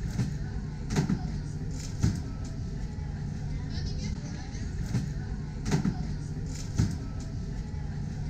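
Airport terminal ambience: a steady low hum with faint background voices, broken by a few sharp knocks.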